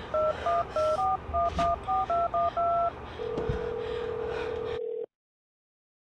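Touch-tone keypad beeps of a phone number being dialed: about ten quick tones, the last held a little longer. Then one steady ringing tone on the line for about two seconds, which cuts off abruptly into silence.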